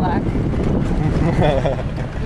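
Off-road vehicle driving over desert ground, heard from inside the cabin: a steady low rumble of engine and tyres, with wind buffeting the microphone. A voice speaks briefly near the end.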